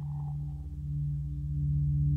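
Radiophonic ambient drone made by electronically manipulating recordings of a metal lampshade: steady low humming tones with a fast low pulsing underneath. A higher ringing fades out within the first second.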